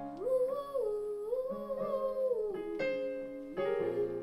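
A girl's solo voice singing a slow melody into a microphone, gliding up between notes and holding them with vibrato, over sustained piano chords.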